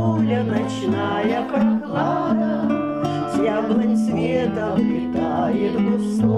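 Two acoustic guitars played as accompaniment to voices singing a song.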